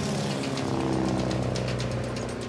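Light aircraft's engine droning, its pitch sinking a little at first and then holding steady.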